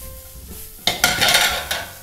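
A refogado of chouriço, bacon, onion and leek sizzles loudly in a hot frying pan as it is stirred. The burst starts about a second in and lasts most of a second.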